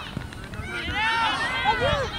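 Several high-pitched voices of youth soccer players and spectators shouting and calling over one another across the field, loudest in the second half.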